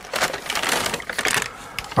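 Paper shopping bag crinkling and rustling as hands rummage inside it, a dense run of quick crackles in the first second or so that eases off toward the end.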